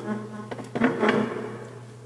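A person's voice making short buzzy murmuring sounds close to the microphone, with a few sharp clicks and knocks among them. A steady low electrical hum runs underneath.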